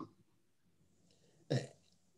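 Dead silence on the call line, broken about one and a half seconds in by a single brief vocal sound from a man, falling in pitch.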